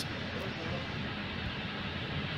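Steady, even background noise, a soft hiss with no distinct clicks or knocks.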